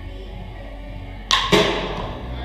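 Two sharp knocks about a quarter second apart near the end, each with a brief ringing tail, over a steady low hum.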